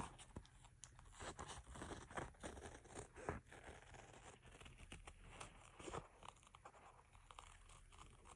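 Scissors cutting through batik fabric backed with a stiff double-sided fusible: a faint, irregular run of snips and crunches.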